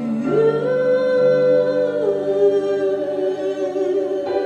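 A woman's voice singing long held notes without clear words: it slides up about a third of a second in, holds, then steps down a little about two seconds in and holds again, over soft band accompaniment.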